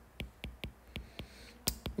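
Stylus tip tapping on a tablet's glass screen while handwriting numbers: a run of light, sharp clicks, about four or five a second.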